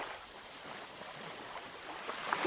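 A thick paper page of a coloring book being turned, a soft rustle that is strongest at the start and settles to a quieter brushing as the page is laid flat.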